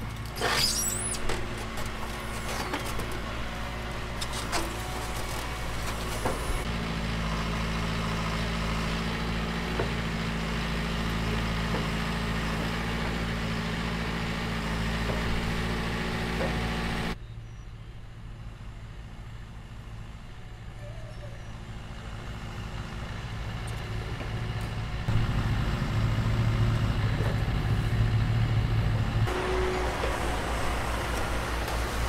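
Diesel engine of a John Deere backhoe loader running while its bucket digs into rocky soil, with scrapes and knocks in the first few seconds. The engine sound drops suddenly partway through and grows louder again near the end as the machine works.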